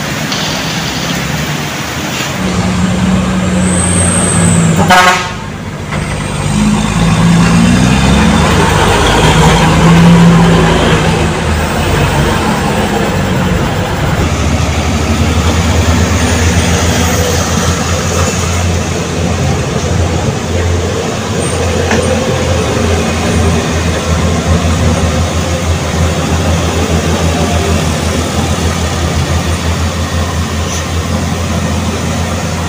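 Heavy truck traffic: engines running with horn toots during the first ten seconds or so, then a steady low engine drone.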